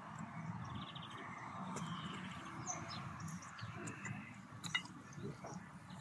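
Faint outdoor ambience: scattered short bird chirps and a brief trill over a low, steady background hum, with one sharp click late on.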